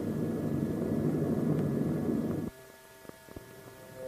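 Steady drone of a WWII propeller bomber's piston engines in flight, on an old film soundtrack. It cuts off suddenly about two and a half seconds in, leaving a faint hum and a few clicks.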